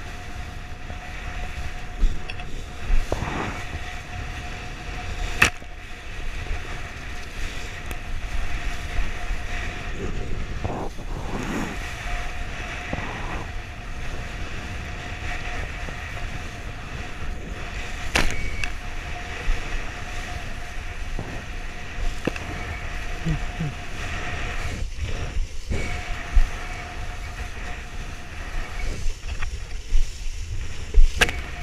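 Wind on the microphone and water rushing under a kiteboard planing over choppy sea, with a few sharp slaps as the board hits the chop.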